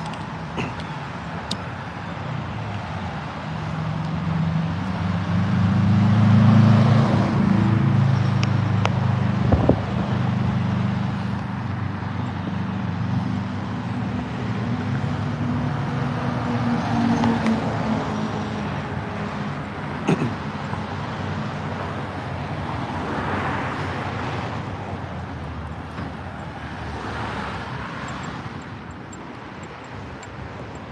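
Road traffic: a motor vehicle's engine rumble builds and passes close by, loudest about six to eight seconds in, followed by further cars passing every few seconds. Two sharp clicks about ten seconds apart.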